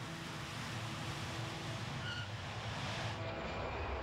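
Jet airliner engines at takeoff power: a steady, wide rush of noise. The highest hiss falls away about three seconds in.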